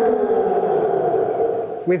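Two men shouting together in one long, loud, drawn-out yell that slowly sinks in pitch and breaks off near the end.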